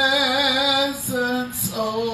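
A woman singing a worship song into a microphone: a long held note with vibrato that breaks off about a second in, a short note, then another held note near the end.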